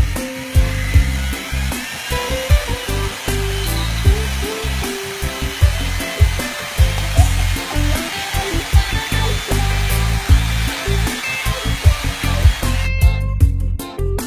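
Background music with a bass line, over a steady rushing noise of a running appliance that cuts off abruptly near the end.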